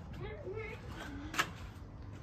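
Faint, quiet speech over low background noise, with one short sharp click about one and a half seconds in.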